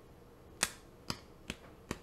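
Four short, sharp clicks made with the hands, a little under half a second apart.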